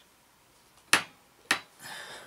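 Two sharp plastic clicks about half a second apart as a stuck cap is forced off a plastic varnish bottle.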